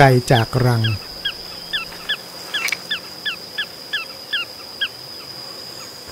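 Small pratincole calling: a run of short, sharp notes, each sliding downward, about three a second, that stops near the end. These are the loud calls given in flight to draw an intruder away from the nest.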